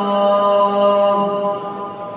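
Muezzin calling the adhan (Islamic call to prayer), holding one long steady note of a phrase that fades away about a second and a half in, leaving a trailing echo.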